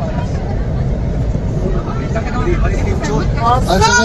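Excited voices over a steady low rumble, with a loud, high-pitched shout near the end.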